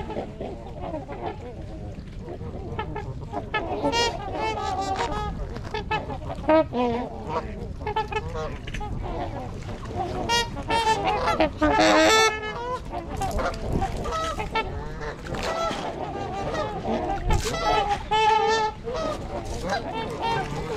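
A flock of Canada geese and trumpeter swans calling on the water: many overlapping honks throughout, with a loud burst of calls about twelve seconds in and another near the end.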